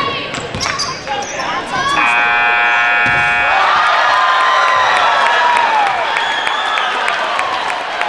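End-of-game gym scoreboard buzzer sounding for about a second and a half as the clock hits zero. It is followed by spectators shouting and cheering as a buzzer-beating three-pointer goes in, with a basketball bouncing on the hardwood.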